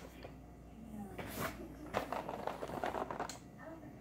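Cardboard cereal boxes being handled and swapped, with a few light knocks and rustles.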